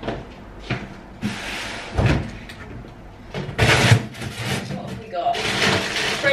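Kitchen unit doors being opened and shut, with a few light knocks, a heavy thump about two seconds in and a louder clatter around four seconds. A woman's voice is heard briefly near the end.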